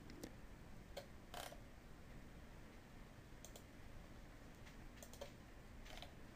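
Near silence broken by scattered faint clicks of a computer mouse and keyboard.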